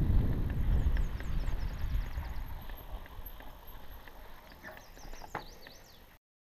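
Low rumbling wind and riding noise from a mountain bike rolling over a grassy dirt trail, with a few sharp knocks, fading steadily away. A run of high, falling chirps comes through the rumble, more of them near the end.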